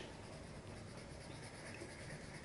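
Crayon scribbling back and forth on paper, faint and steady.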